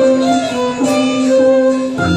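Small live band playing an instrumental passage of a Burmese song, a violin's held notes carrying the melody over keyboard and a steady low note.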